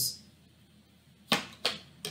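Two sharp card snaps, about a third of a second apart, a little past halfway through: a tarot card being slid off the deck and flicked over.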